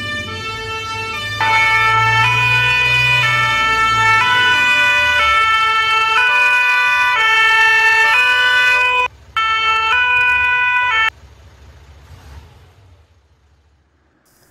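Emergency vehicle two-tone siren, loud, alternating between a high and a low note about twice a second over a low rumble. It comes in fully about a second and a half in, drops out briefly near nine seconds, and stops suddenly about eleven seconds in, leaving faint noise that fades away.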